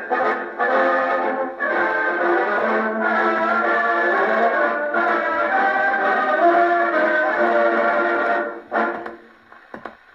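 Brass band playing a march from a 78 rpm shellac record on a portable wind-up gramophone, with a faint click about every 0.8 s, once per turn of the disc, from a glued-in repair in the record. The music ends about eight and a half seconds in, leaving quieter needle noise from the run-out.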